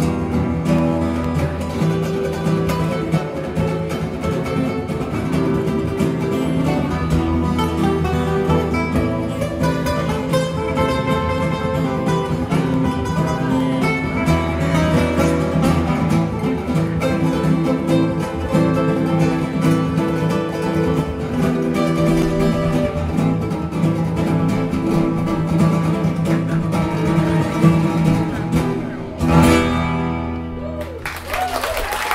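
Two acoustic guitars playing a lively duet of rapid picked notes over sustained low bass notes, ending with a final chord near the end.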